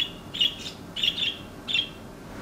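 Small pet birds chirping: four short, high chirps about half a second apart.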